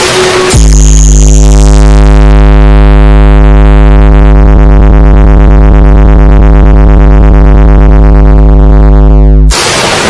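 Electronic DJ sound-check track: a very loud, deep synthesizer bass note held steady for about nine seconds, cutting off suddenly near the end into a noisy, busier burst of the track.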